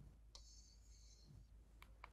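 Near silence with two faint clicks, the first about a third of a second in and followed by a brief faint high hiss, the second near the end.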